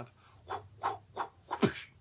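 A man laughing under his breath: five short breathy bursts about three a second, the last the loudest.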